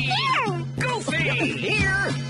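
Children's cartoon theme song with a steady backing, overlaid by high, quickly rising and falling cartoon character voices calling and exclaiming.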